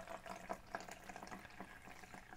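Water poured from a plastic jug into a plastic beaker, a faint steady pour with small scattered splashes.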